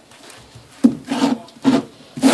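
Cardboard LP record sleeves being flipped through by hand, each jacket sliding and scraping against its neighbours: two dry swishes in the second half, the first starting sharply and lasting about half a second, the second shorter.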